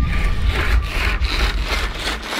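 A fabric roman shade on a round window being worked by its cord: a rough, rasping rub of cord and cloth, with a low rumble under it.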